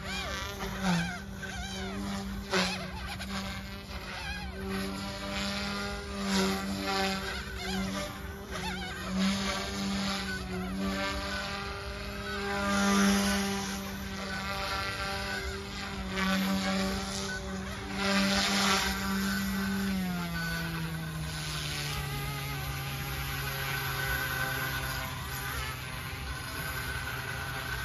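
Mikado Logo 200 electric RC helicopter buzzing in flight, its rotor pitch wavering and swelling with each manoeuvre. About 20 seconds in the pitch drops and settles to a lower steady buzz as it comes down and lands on the grass.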